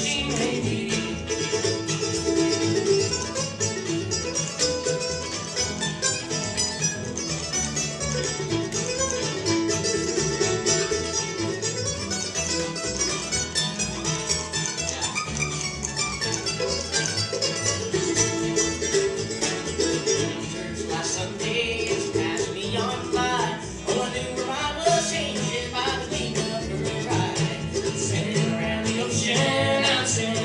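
Acoustic bluegrass band playing at a steady tempo: fiddle, mandolin, upright bass and acoustic guitar.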